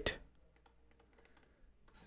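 Faint, irregular clicks and taps of a stylus writing on a pen tablet.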